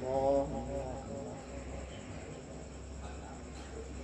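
A male Quran reciter's voice ends a held, wavering note within the first second. A pause follows, with only a steady low hum and faint background noise.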